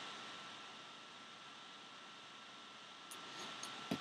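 Low steady hiss of room tone, with a few faint light ticks near the end as a thick trading card is handled and set down on a table.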